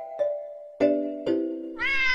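A short intro jingle of struck, ringing notes, three of them, followed near the end by a single cat meow whose pitch rises and then slowly falls.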